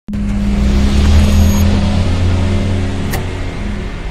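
Logo-intro sound effect: a loud deep rumble with a steady low hum and hiss, starting abruptly, with a sharp click about three seconds in.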